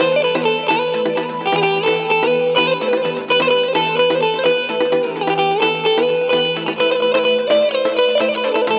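Azerbaijani saz, a long-necked lute, played in a fast run of quick plucked notes over a steady ringing low drone.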